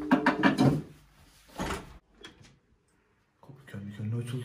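A wooden apartment door being handled and opened. A creaking, pitched sound at the start is followed by a short rattle about halfway through and a few light clicks.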